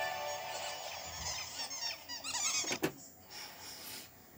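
VHS soundtrack played through a small TV speaker: a held music chord fades out while high, squeaky chirps like animal calls start up. A sharp click comes near three seconds in, and the sound drops low after it.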